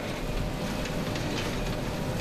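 Krone BiG Pack HDP II large square baler running while baling behind its tractor: a steady mechanical noise with a deep low hum underneath.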